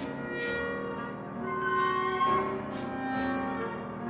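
Live contemporary chamber music from flute, clarinet, cello and piano: overlapping held notes, with a few short breathy, noisy accents cutting through.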